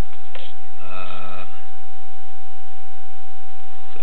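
A steady high-pitched electronic tone, with a man's voice sounding briefly about a second in.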